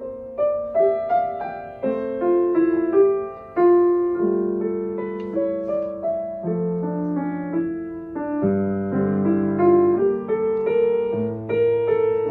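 Solo acoustic grand piano played: a classical piece with a melody line over sustained lower notes, at a moderate pace.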